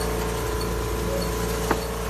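A large engine or machine running with a steady, even hum, with one sharp click near the end.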